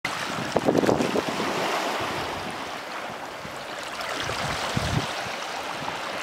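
Seawater surging up through a hole in a rock shelf, gurgling and splashing over the steady wash of surf. A burst of splashy gurgles comes about a second in, and a deeper gush near the end.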